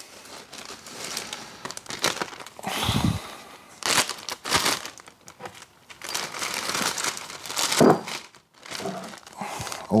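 Clear plastic bag crinkling and rustling in irregular bursts as hands handle it and put parts into it.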